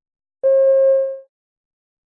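A single steady electronic beep, held at one mid pitch for just under a second, with silence around it: the cue tone that marks the start of a recorded listening-test extract.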